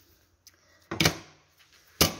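A single short knock with a rustle about a second in, from hands working at the sewing machine while rethreading the needle after the thread slipped out, followed by a faint low hum.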